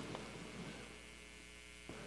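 Faint steady low electrical mains hum under quiet room tone, with the echo of a voice dying away at the start.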